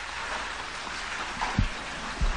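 Steady hiss and room noise of a lecture recording, with a single low thump about one and a half seconds in.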